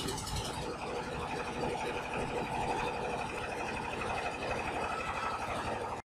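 An engine idling steadily, with a fast, even pulse and a steady whine above it. It cuts off suddenly at the end.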